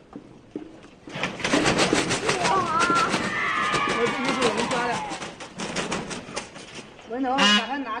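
Blue peafowl beating its wings in a catching net: a rapid run of flaps and scuffling starting about a second in and dying away after about five seconds, with excited rising-and-falling cries over the middle.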